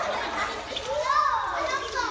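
Young children talking and calling out over one another, their high voices rising and falling, in a tiled indoor swimming pool.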